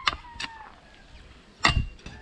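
A long steel digging bar driven into rocky, stony soil: a couple of light knocks, then one heavy, sharp strike about three-quarters of the way through.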